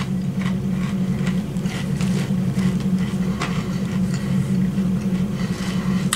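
A steady low hum, with faint scattered crunches of tortilla chips being chewed.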